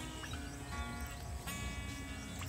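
Quiet solo acoustic background music, soft notes entering every half second or so.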